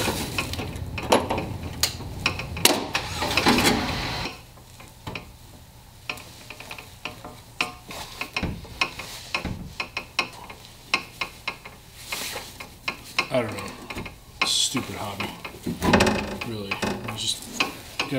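Metal scraping and clinking of hand tools working inside the hollow steel door of an early Ford Bronco. A dense stretch of scraping over the first four seconds gives way to scattered light clicks, and it grows louder again near the end.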